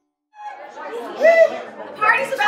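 Brief silence, then people's voices talking in a large room, starting about a third of a second in.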